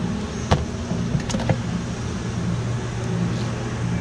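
A steady low mechanical hum, with a few light clicks and knocks about half a second in and again around a second and a half in.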